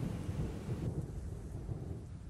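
A low, uneven rumble with no tone in it.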